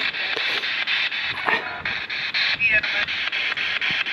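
Ghost-hunting spirit box, a handheld radio sweeping rapidly through stations, giving a loud chopped hiss of static at about five or six bursts a second.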